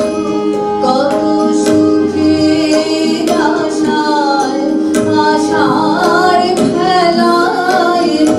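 Live Bengali song performance: women singing a melody over a sustained harmonium drone, with violin and keyboard, and tabla strokes keeping a steady rhythm.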